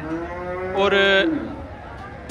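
A Holstein-type dairy cow mooing: one long moo of about a second and a half that fades out.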